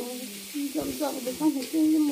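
An elderly woman talking, her voice rising and falling, over a steady background hiss.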